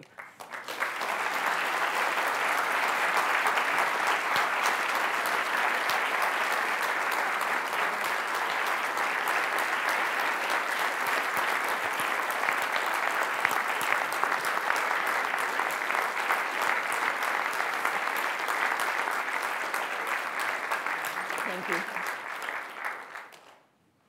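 A large audience applauding, a long steady round of clapping that starts at once and dies away just before the end.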